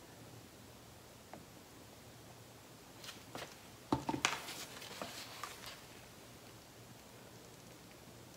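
Quiet room tone, broken about three seconds in by a short run of light knocks and clatter, loudest about four seconds in, as a paint cup is set down among the cups on a work table.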